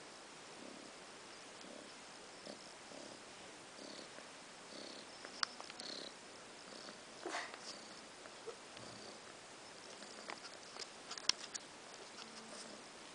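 Domestic cat purring faintly in a steady rhythm while pawing and kneading a fleece blanket, with soft rustling and a few sharp clicks as its claws catch the fabric.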